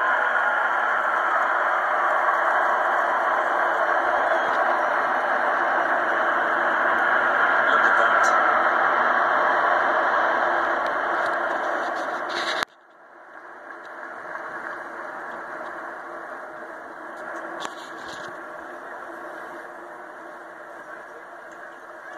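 Muffled, steady roar of a large formation of RAF Typhoon fighter jets passing overhead. About twelve seconds in it drops suddenly to a quieter version of the same noise.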